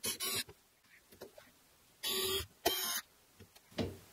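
A hand screwdriver turning screws to fasten a wire pull-out shelf to its slide rails. It makes short bursts of noise, two at the start and two more about two seconds in.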